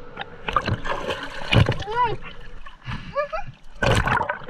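Water splashing and sloshing around swimmers in a river, in short irregular bursts, with a brief wordless voice sound about two seconds in and a louder splash near the end.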